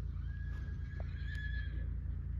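A horse whinnying: one long, high call holding a fairly even pitch for about a second and a half, over a steady low rumble, with a single click about halfway through.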